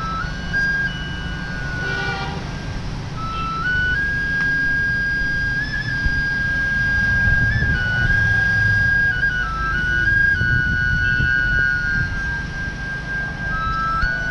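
A slow flute melody of long held notes that step up and down by small intervals, over a steady low rumble of wind on the microphone.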